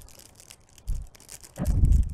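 Small toy-accessory packets crinkling and tearing as they are opened by hand, with a dull thud about a second in and a louder low thump near the end.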